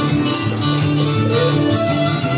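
Two acoustic guitars playing together live, strummed chords ringing steadily.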